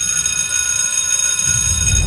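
Steady high-pitched electronic tone, a sound effect over the show's title card. It starts abruptly and holds one unchanging pitch for about two seconds.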